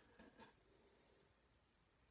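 Near silence: room tone, with a faint brief sound in the first half second.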